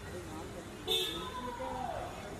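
Voices talking in the background, with a short, sharp high-pitched sound about a second in, followed by a single falling tone.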